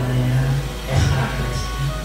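A man's voice amplified through a handheld microphone and loudspeaker, delivered in long, drawn-out held tones.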